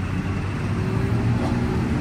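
Steady low rumble of road traffic on a busy city street, with engines humming as vehicles pass.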